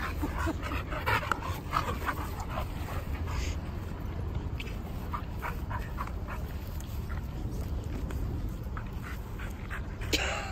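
Two dogs play-wrestling, with short vocal sounds coming thick in the first few seconds and only now and then after that.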